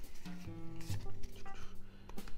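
Background music with held, guitar-like notes, under a light rustle of Pokémon trading cards being flipped through by hand.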